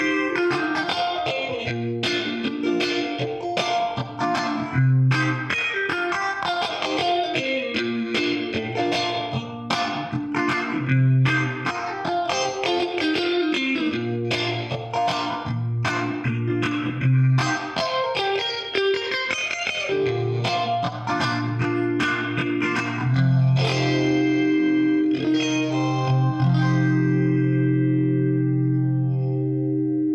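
Clean Fender Stratocaster electric guitar played through an MXR Phase 90 phaser pedal: a reggae rhythm of short, choppy chord strokes, ending on a held chord that rings out for the last several seconds.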